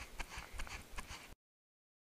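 Running footsteps on grass, about four a second, over a low wind rumble on the microphone. The sound cuts off abruptly to dead silence about a second and a half in.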